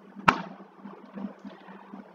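A single sharp click from someone working a computer, over a faint steady low hum.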